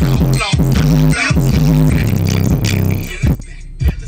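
Hip hop music with heavy bass, played loud on a car sound system through two 12-inch Pioneer subwoofers in a sealed box, driven by a 2000-watt Lanzar Heritage HTG257 amplifier, heard inside the cabin. The music drops off about three seconds in.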